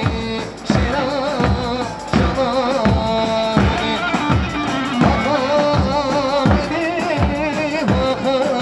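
Live Kurdish wedding band playing a grani halay tune: a singer's wavering, ornamented melody over a steady, regular drum beat.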